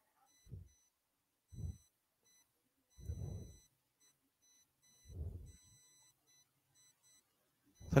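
Quiet pause: a faint high electronic beeping that stops and starts irregularly, with four short, soft low sounds like muffled murmurs.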